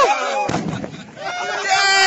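Several men shouting in long, drawn-out calls that rise and fall, with a dull boom about half a second in.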